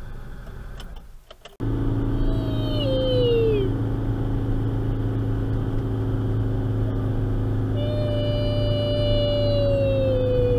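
Stock 63 hp Ford Festiva four-cylinder engine droning steadily under load while pulling a trailer uphill, heard from inside the cabin. It starts suddenly about one and a half seconds in. Over it a child's voice twice mimics an engine losing speed on a hill, a falling drawn-out engine noise about two seconds in and a longer one from about eight seconds in.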